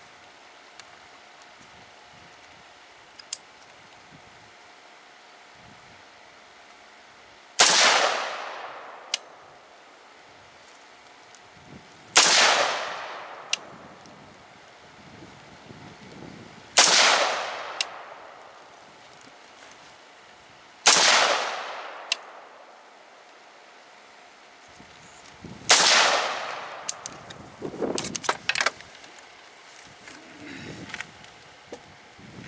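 Five single rifle shots from an Expo Arms AR-15 with a 14.5-inch chrome-lined barrel, spaced about four to five seconds apart, each followed by a short echoing tail. A quick run of clicks and knocks follows the last shot.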